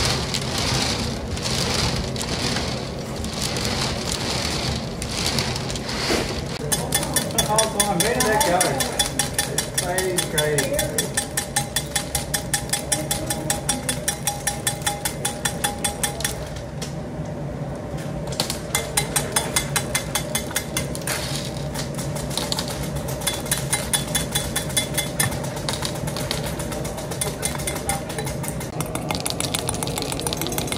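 Hard candy rods chopped on a stainless steel bench with a wide steel blade: a fast, even run of sharp chops several per second, with a short pause about two-thirds through, after some scattered knocks of the rods being handled at the start. A steady hum runs underneath.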